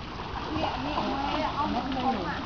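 Water splashing and running under the voices of several people talking.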